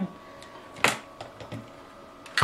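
The amplifier's cooling fan runs with a faint steady hum just after power-on. A single sharp click comes just under a second in, with a few lighter ticks around it.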